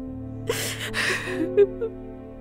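A crying woman takes one sobbing, gasping breath lasting nearly a second, about half a second in, over soft background music with long held notes.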